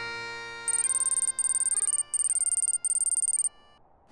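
Bagpipe music holding sustained notes, with a high, rapidly pulsing electronic ring in four bursts over it; both stop shortly before the end.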